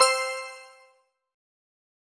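A single bell-like chime sound effect, struck once and ringing out, fading away within about a second.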